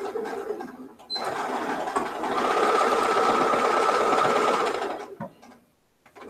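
Electric home sewing machine stitching a seam through fabric: a short run, a brief stop about a second in, then a steady run of about four seconds that stops about five seconds in, followed by a couple of light clicks.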